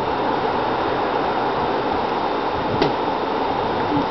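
Steady rushing of river water, an even noise with no change in level.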